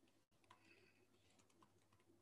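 Near silence: faint room tone with a scatter of light clicks, like soft typing, from about half a second in to near the end.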